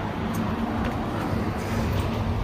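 A steady low mechanical hum over a constant rumble, with a few faint light clicks.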